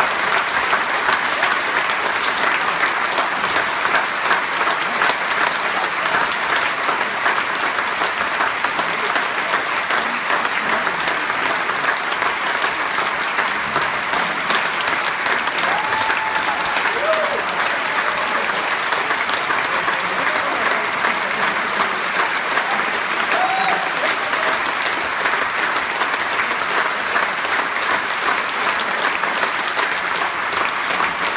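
Concert-hall audience applauding steadily and densely, with a few short pitched calls from the crowd about halfway through.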